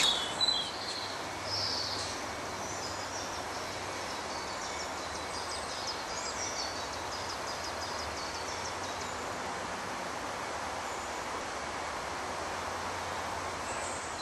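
Steady background ambience, an even noise with no speech, with a few faint high chirps about a second and a half in and a faint quick run of high ticks from about three to nine seconds in.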